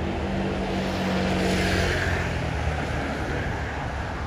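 A motor vehicle passing on a city street: a steady low engine hum with a swell of road noise in the middle.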